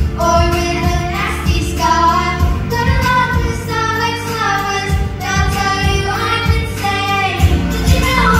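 A child singing a song with instrumental accompaniment, long held notes bending in pitch.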